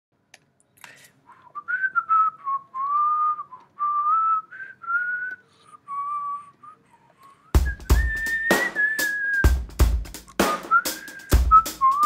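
Music: a whistled melody in short phrases, joined about seven and a half seconds in by a drum-kit beat with kick, snare and cymbals.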